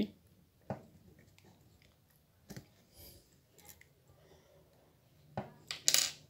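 A few faint, scattered clicks and small metallic taps from a coil spring and retaining clip being pressed by hand onto a tailgate handle lock cylinder, with a sharper pair of clicks near the end.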